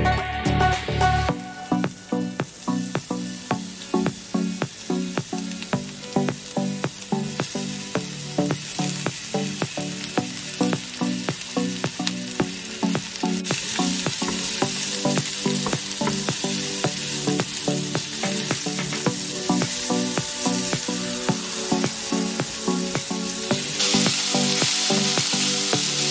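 Sliced onions and sweet peppers sizzling as they fry in hot oil in a stainless steel pan, stirred with a wooden spatula. The sizzle grows louder about halfway through and again near the end, with music underneath.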